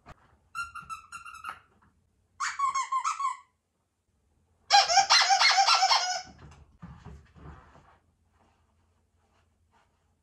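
Squeaky plush dog toy squeezed three times, each squeeze a pitched squeak with a fast flutter, each lower than the last; the third is the longest and loudest. Soft knocks of handling follow.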